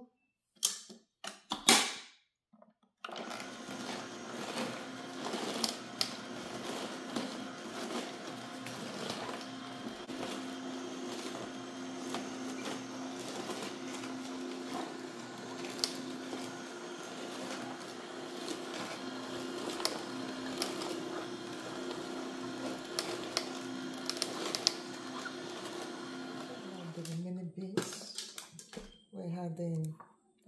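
A few knocks, then a Nama slow masticating juicer starts about three seconds in and runs with a steady motor hum, its auger crushing vegetables with frequent sharp crackles; it stops near the end.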